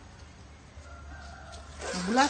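A rooster crowing faintly in the distance, over a low steady hum. Near the end a loud voice starts up.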